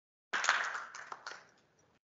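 Audience clapping: applause that starts abruptly about a third of a second in and dies away within about a second.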